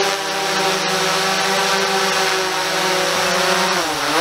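DJI Mavic 2 quadcopter hovering, its propellers giving a loud, steady whine at an even pitch.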